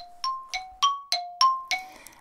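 A short bell-like chime jingle: seven struck notes, about three and a half a second, alternating between a lower and a higher pitch, each ringing briefly and fading.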